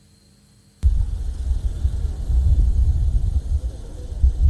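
Wind buffeting a field reporter's outdoor microphone: a loud, fluctuating low rumble that cuts in suddenly about a second in as the live outside feed opens, after a short quiet pause.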